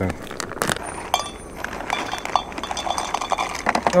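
Plastic snack bag of salted peanuts being handled and opened, crinkling with many small irregular clicks and crackles.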